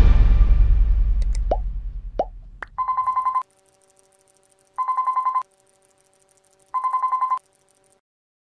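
Background music fading out, three short rising blips, then a telephone ring sound effect: three short warbling rings about two seconds apart.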